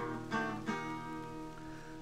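Acoustic guitar playing a short instrumental fill between sung lines of an old country song: a couple of strummed chords that ring out and fade.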